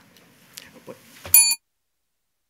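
Faint room sounds, then a little over a second in a single short, bright bell-like ring with a knock, about a quarter second long, cut off abruptly into silence.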